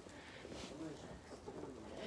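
Faint, low cooing bird calls, in two short runs.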